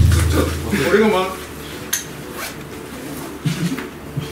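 A brief voice and a few sharp clicks and clinks, the sound loudest in the first half-second and quieter after about two seconds.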